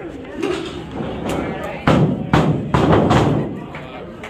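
Heavy thuds of wrestlers' bodies hitting the wrestling ring, three in quick succession from about two seconds in, with crowd voices around them.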